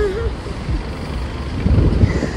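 Uneven low rumble of wind buffeting the phone microphone over traffic, with gusty swells strongest near the end. A brief hummed voice sound comes at the very start.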